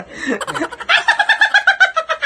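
A young man's high-pitched laughter: a quick run of 'ha' pulses, about eight a second, rising to its loudest in the second half.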